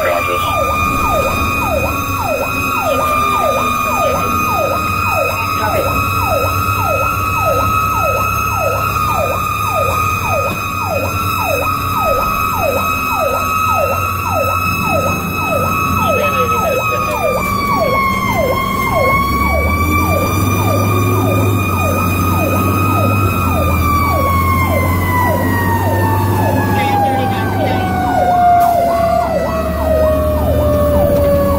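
A Federal Q mechanical siren screaming at a steady high pitch over a fast electronic yelp siren, heard from inside the cab. The Q's pitch dips and climbs back once past the middle, then winds down steadily over the last several seconds.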